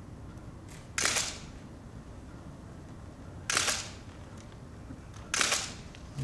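Still cameras' shutters firing three times, each a short sharp burst, about two seconds apart, as a posed photograph is taken.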